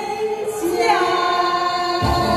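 Two women singing a duet of a Mandarin pop ballad into microphones over a hall PA with backing music. They hold long notes and slide down to a new held note about a second in.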